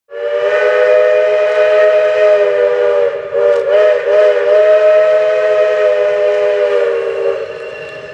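Locomotive chime steam whistle blown in one long blast: several notes sounding together over a hiss of steam, wavering in pitch briefly about three seconds in, then fading away near the end.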